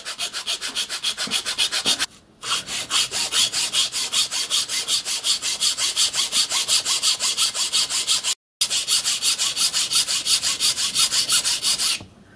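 Hand file rasping back and forth across a piece of wood to cut a radius, in quick even strokes about four a second, with a short pause about two seconds in.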